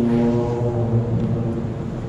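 A man's voice holding one long low note that fades out about a second and a half in.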